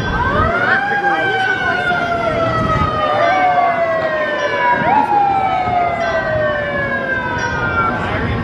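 A mechanical emergency-vehicle siren spins up over the first second, then winds down slowly, falling in pitch. It is briefly pushed back up twice, about three and five seconds in.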